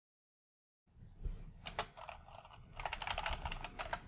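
Typing on a computer keyboard: a few separate key clicks starting about a second in, then a quick run of keystrokes near the end as a login password is entered.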